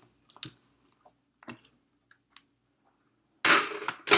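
A few light taps and clicks from handling craft materials on the table, then, about three and a half seconds in, a loud brief scraping rustle as the black pad and plate are lifted and slid off the work surface.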